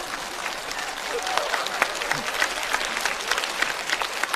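Studio audience applauding: many hands clapping in a steady patter.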